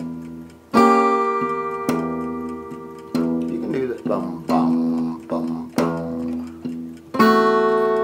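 Acoustic guitar chords of a simple blues progression struck one at a time with the thumb, about one every second and a quarter, each left to ring and die away.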